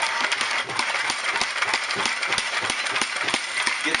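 Star San sanitizer solution sloshing and splashing inside a lidded plastic fermenter bucket that is being shaken hard, with rapid, irregular knocks and rattles throughout. The bucket is being shaken to coat and sanitize its inside.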